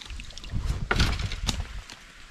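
Shallow water splashing and sloshing around a rubber boot and a dip net wading through a stony ditch. It is loudest about a second in and again half a second later, over a low rumble of wind on the microphone.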